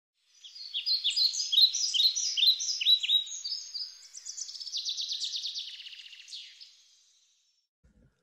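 A songbird singing: a run of quick, high, downward-slurred chirps, then a fast trill about halfway through that fades away near the end.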